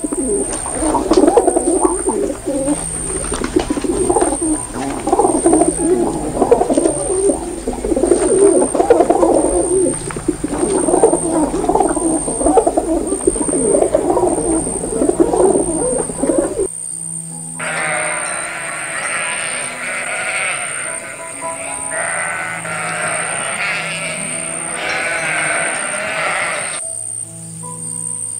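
Domestic pigeon cooing over and over in low, rolling coos over soft background music, for about the first two thirds. Then the coos stop and a higher-pitched animal calling takes over until just before the end.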